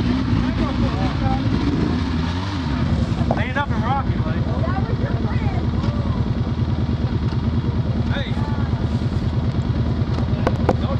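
A motor vehicle's engine running at low speed, its pitch shifting up and down for the first few seconds and then settling into a steady, fast low throb. Short higher-pitched chirping sounds come over it about three and a half seconds in and again around eight seconds.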